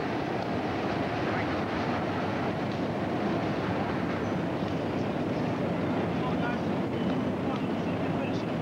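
Indistinct voices over a steady outdoor background noise.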